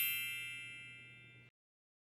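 A bright, bell-like chime sound effect, played as a slide-transition cue, ringing and fading away until it dies out about one and a half seconds in.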